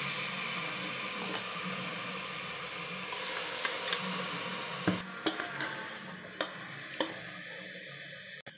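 Raw mutton sizzling in hot oil and masala in a metal pot, with the sizzle slowly fading. A metal ladle clicks against the pot four times in the second half as the meat is stirred.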